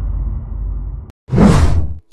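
Intro sound effects: the low rumbling tail of a boom fading, cut off suddenly about a second in, then a short whoosh that swells and ends with the window.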